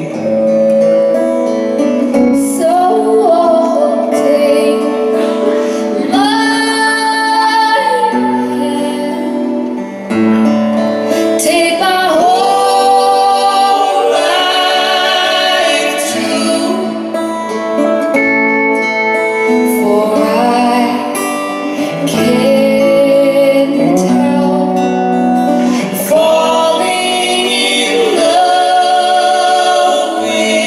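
Live acoustic song: two guitars accompanying a woman singing lead.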